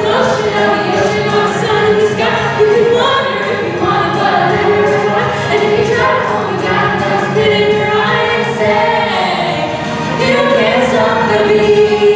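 A cast of young performers singing together in chorus over musical accompaniment in a stage-musical number, with several long held notes.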